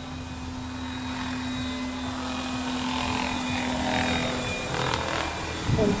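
Large radio-controlled scale model of a Boeing CH-47 Chinook tandem-rotor helicopter in flight, its rotors and drive giving a steady hum that grows louder as the model comes closer.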